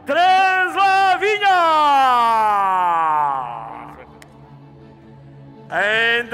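An announcer's voice calls out a skater's name, the last syllable stretched into one long note that slides down in pitch for about two seconds. It then fades to a quieter background with a low hum, and the announcer starts speaking again near the end.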